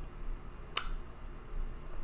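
A single sharp click about three quarters of a second in, with two faint ticks later, over a low steady hum.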